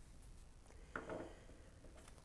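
Near silence: room tone, with one faint, short sound about a second in.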